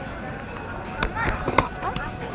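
Four short, sharp clicks in the second half, the loudest about a second and a half in, over a busy market background.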